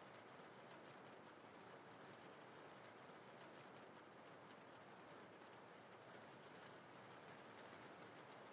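Faint, steady rain hiss with no changes.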